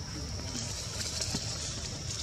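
Outdoor ambience: a steady high-pitched drone over a continuous low rumble, with faint indistinct voices.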